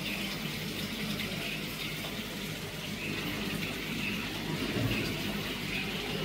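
Steady rush of running water with a low hum beneath it.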